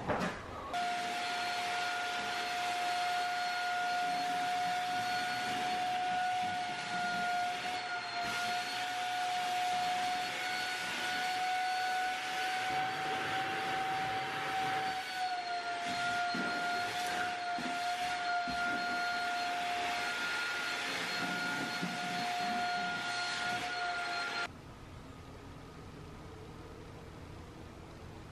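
A Shark vacuum cleaner running with a steady high whine over a hiss as it sucks up fine dust. Its pitch dips slightly about halfway through, and it switches off suddenly a few seconds before the end.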